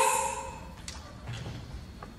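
The end of a girl's word dies away in the hall's echo, then a small object is set down on the stage floor: a light click about a second in, then a soft low thud.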